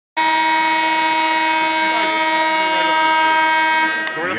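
A single loud, steady horn blast, one unwavering pitch held for nearly four seconds before it cuts off sharply.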